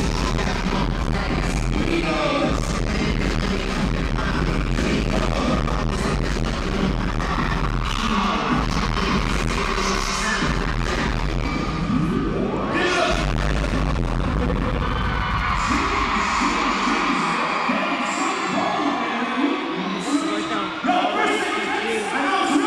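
Loud live pop music played through an arena PA, with a heavy bass beat. About twelve seconds in a rising sweep goes up in pitch, and after about sixteen seconds the bass drops out, leaving the higher parts of the music.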